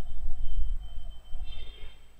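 Low background rumble with no speech, and a faint soft sound about one and a half seconds in.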